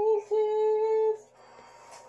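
A three-month-old baby cooing: two drawn-out, high, steady 'aah' vowel sounds, the second held for about a second before stopping.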